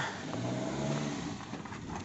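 Suzuki Ignis hatchback's engine idling, a low steady hum.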